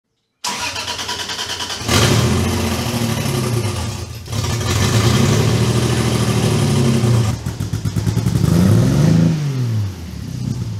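Turbocharged 2JZ inline-six in a Datsun 260Z idling briefly, then revved repeatedly, its pitch swelling up and falling back. First heard through an open downpipe; in the last few seconds, after a brief break, it is revved through a newly built stainless-steel exhaust.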